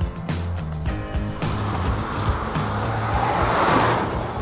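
Background music with a steady beat, over a car pulling onto the gravel shoulder. Its tyre and road noise swells and grows louder toward the end.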